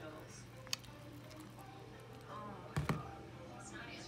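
Faint handling sounds with a small click about a second in, then a single sharp knock near three seconds in as a plastic tub is set down on a glass tabletop.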